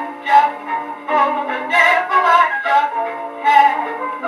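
A 1939 dance-orchestra recording played from a 78 rpm record on an Edison hand-cranked phonograph: band music with no deep bass.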